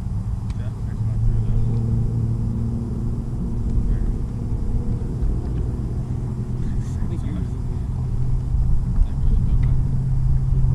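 A boat motor running with a steady low hum.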